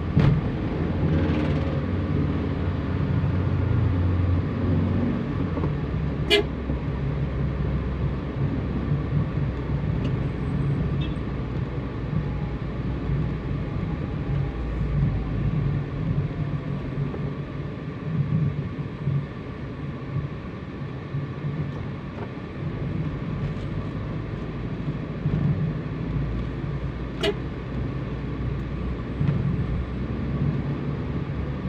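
Vehicle engine and road noise from riding in moving city traffic, a steady low drone. Two sharp clicks stand out, about 6 seconds in and near the end.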